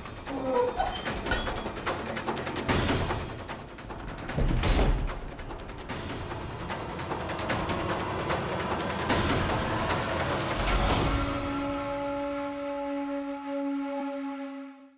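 Dramatic background music: fast, dense drum rolls with several loud hits, ending on a long held note.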